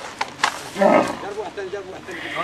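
A camel calls once, loud and short, about a second in. Two sharp clicks come just before it.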